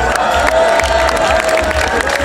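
A crowd cheering and clapping under one long held note that falls slightly in pitch; a second held note starts near the end.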